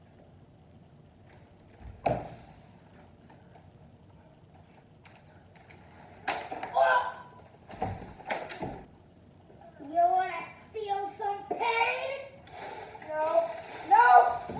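A single thump about two seconds in. From about six seconds, a few knocks mixed with a child's cries, then children's voices calling out, with no clear words, through the last few seconds.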